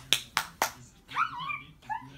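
A quick run of sharp clicks, about four a second, made to call a baby over. About a second in comes a brief high-pitched squeal.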